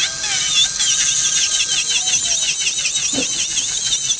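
Electric nail drill (e-file) running, a high whine that wavers up and down about four times a second as the bit is worked over a gel nail, filing back the old gel for a fill.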